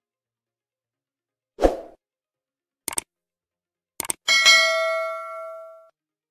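Subscribe-button animation sound effects: a short thump, two quick double clicks, then a bell ding that rings out for about a second and a half before fading.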